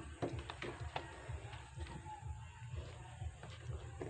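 Faint handling sounds: a few light taps and knocks as a raw duck is lifted and set down onto pieces of banana stalk in a metal wok, over a low hum.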